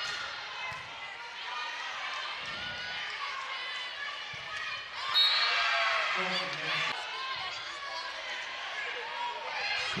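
Indoor arena crowd noise at a volleyball match: a steady din of many voices chattering and calling out, swelling louder about five seconds in, with a brief high-pitched sound at the start of the swell.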